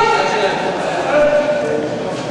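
Several people's voices calling out across a large sports hall, with one loud, high-pitched shout at the start and more calls about a second in.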